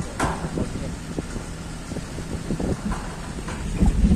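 Small pickup truck's engine running with a steady low rumble, with a few short knocks and rattles over it.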